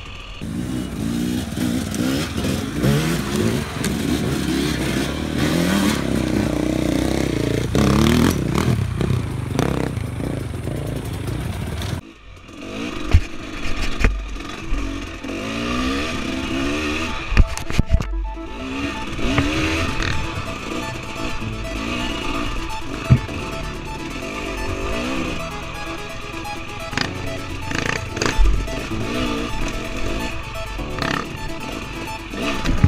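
Two-stroke dirt bike engine, a 2017 Husqvarna TX 300, heard from on the bike as it is blipped and revved up and down at low speed over rocks, with sharp knocks and clatter as the bike strikes rocks. The sound cuts off abruptly about 12 seconds in and picks up again.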